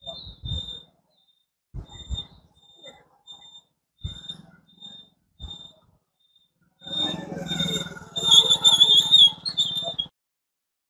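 A motorcycle's engine running as it rides through the curves of a two-wheeler test track, coming in as short bursts and then running steadily and loudest in the last three seconds. A high, thin chirp repeats over it, about two a second, and is loudest near the end.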